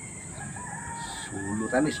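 A turkey, held upside down by its legs, gives a couple of short, loud, squawking calls near the end, over quiet outdoor background.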